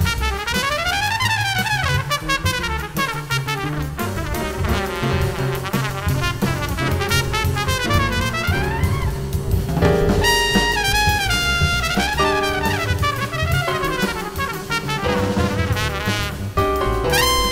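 Small-group jazz: a trumpet plays quick runs of notes that rise and fall, over a bass line and drum kit.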